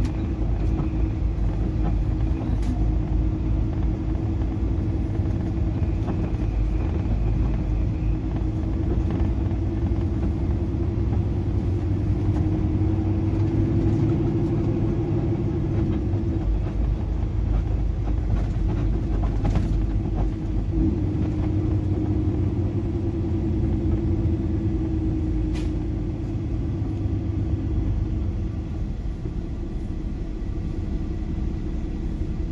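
Semi truck's diesel engine running and road noise heard from inside the cab while driving, a steady low rumble. The engine note swells about halfway through, and the sound eases a little near the end as the truck slows.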